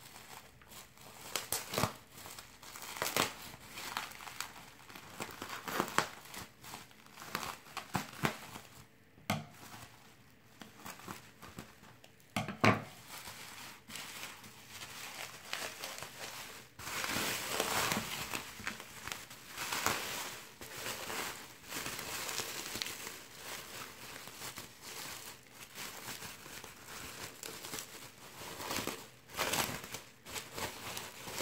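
Plastic bubble wrap being handled and pulled open by hand: irregular crinkling and crackling with scattered sharp clicks and one louder snap about halfway through. The crinkling thickens in the second half as the wrap is peeled off.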